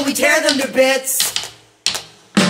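A folk-punk singer's voice, unaccompanied, singing or shouting a line that breaks off about a second in. A single sharp click follows near the end.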